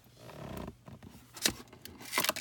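Handling sounds of clear plastic storage drawers being rummaged through: a low rustle and rumble, then one sharp plastic click about one and a half seconds in.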